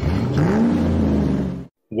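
Car engine revving: the pitch climbs quickly, then holds and sags slightly before cutting off suddenly.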